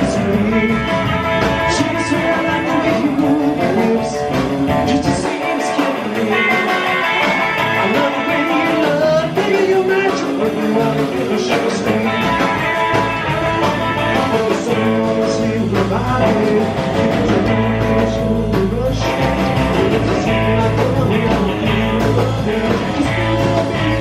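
A rock and roll band playing live: upright bass, acoustic rhythm guitar, electric hollow-body guitar and drums. A male lead vocal comes in about two-thirds of the way through. The low end drops out for about ten seconds in the middle, then comes back.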